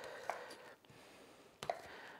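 A sharp knife slicing through a tough stick of pepperoni on a cutting board, faint, with one sharp knock of the blade on the board about one and a half seconds in.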